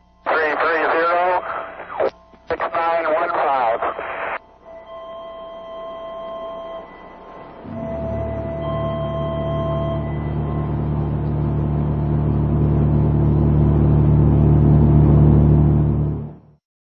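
A garbled voice over a radio link, with steady thin tones behind it, for the first four seconds. From about eight seconds in, a low sustained drone, most likely music, swells louder and cuts off suddenly at the end.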